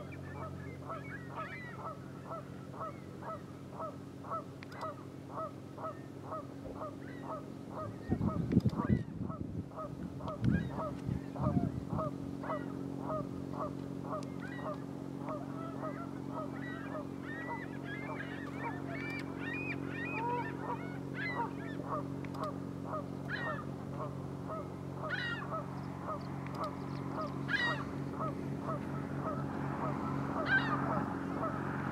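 Geese honking in a long, fast run of calls, about three a second, over a steady low hum. A few low thumps come about eight to twelve seconds in.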